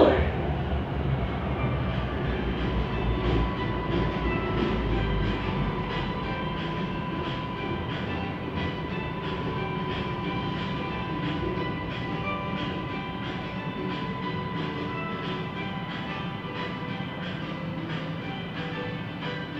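Siemens Inspiro metro train heard from its cab, pulling away and running on: a steady rumble with a thin steady whine and stepped motor tones above it. A regular clicking of about two a second sets in after a few seconds.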